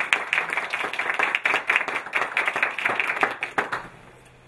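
Applause from a small seated audience, many hands clapping at once, dying away just before the end.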